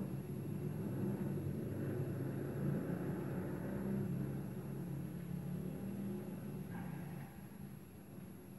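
A low, steady engine rumble that fades near the end.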